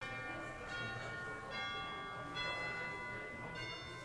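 Church bell chimes struck one by one in a slow sequence of different pitches, about five strikes, each note ringing on under the next.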